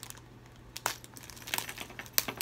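Packaging of a lure order crinkling as it is handled, with a sharp click about a second in and a few more clicks near the end.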